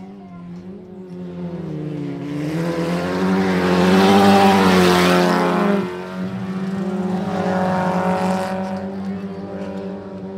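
Folkrace hatchback race cars passing close on a dirt track. The first car's engine climbs in pitch and loudness, then drops off sharply about six seconds in. A second car's engine swells and fades after it.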